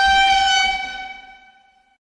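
A single long, high horn-like note, loud at first and fading away over about two seconds.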